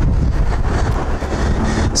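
Wind buffeting the camera's microphone: a loud, steady low rumble that stops suddenly near the end.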